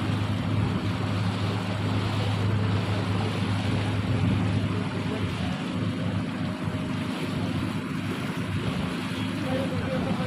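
Passenger motor boat's engine running at a steady low drone, mixed with the rush of churning water in its wake and wind.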